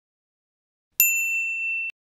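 A single high, bell-like ding sound effect: one clear tone with faint higher overtones, struck about a second in, ringing for just under a second and then cutting off suddenly.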